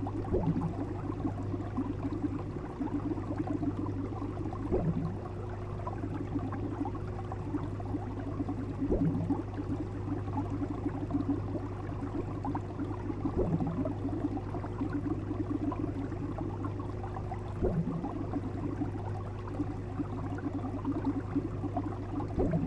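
Fish tank bubbler: air bubbles rising and bursting in aquarium water in a continuous, steady burble over a low hum. A brief louder blip recurs about every four seconds.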